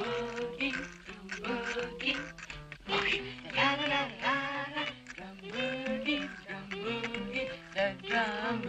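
Quiet singing of a swing boogie tune, accompanied by light rhythmic tapping on a matchbox used as a drum.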